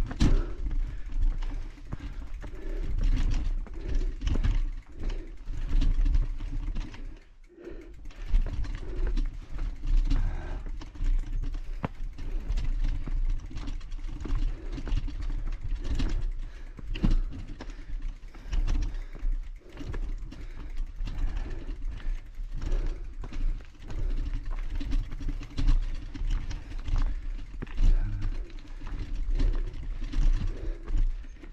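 Footsteps and scuffs of walking uphill on a dirt trail, with a constant, uneven low rumble of wind and handling noise on the body-worn camera's microphone.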